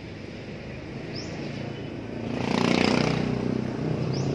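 A motor vehicle passing by on the street: its engine grows louder about two seconds in, is loudest near three seconds, then eases off. A short high chirp comes about a second in.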